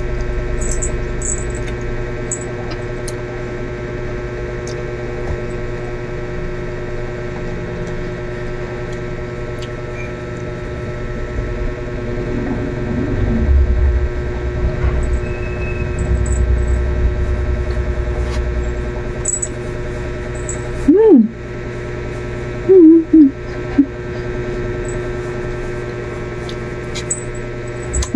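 A woman chewing kutsinta, a sticky rice cake, with small mouth clicks, over a steady electrical hum. Two short hummed "mm" sounds of enjoyment come about three quarters of the way through.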